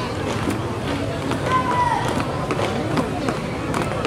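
A squad marching in step on asphalt, shoes striking the ground in repeated footfalls, over the chatter of a crowd of voices.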